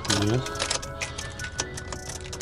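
Irregular clicking from a Subaru with a flat battery as the key is turned with a jump starter attached; the engine does not crank or start.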